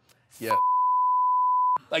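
Censor bleep: one steady beep tone, a little over a second long, dubbed over a spoken swear word to mask it. A short spoken "Yeah" comes just before it.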